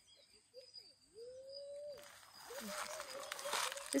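Faint animal calls in open countryside: long held notes, each rising in and falling away, repeated several times over a faint high steady buzz. Soft rustling builds near the end.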